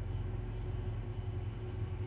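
Steady low hum of an idling semi-truck engine, even and unchanging, with no sudden sounds.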